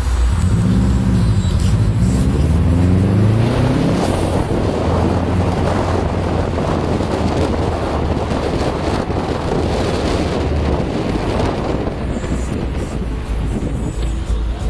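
Subaru Impreza's flat-four engine accelerating, its note climbing over the first few seconds, then running steadily at speed under tyre and wind noise, heard from inside the cabin.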